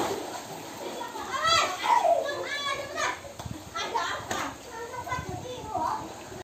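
Children's high-pitched shouts and calls, several in a row, with splashing water underneath.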